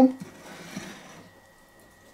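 XII Knife bushcraft knife slicing through a ham: a soft rasping cut lasting about a second.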